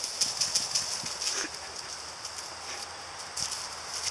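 Footsteps and running paws swishing through long grass in quick, uneven rustles, busiest in the first second and a half and again near the end.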